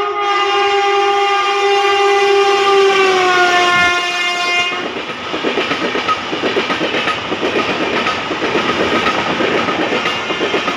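An Indian Railways express train passes at high speed. Its electric locomotive sounds one long horn blast, which drops in pitch about three seconds in as the locomotive goes by and stops just before the halfway point. The passenger coaches then rush past, their wheels clattering over the rail joints in a fast, even rhythm.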